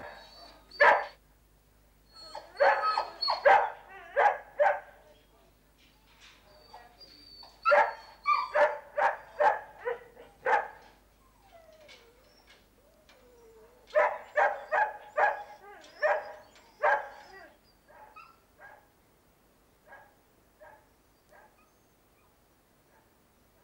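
Caged dogs barking in repeated volleys of quick barks, with pauses between volleys. Near the end the barks thin out into occasional quieter ones.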